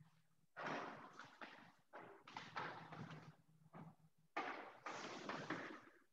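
Several bursts of nearby rustling and handling noise over a faint, steady low buzz. The buzz fits a mobile phone vibrating in another room, and it stops about four seconds in.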